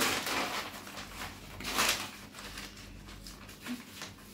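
Sheets of newspaper rustling and crinkling as they are folded and smoothed by hand, with a louder rustle at the start and another a little under two seconds in.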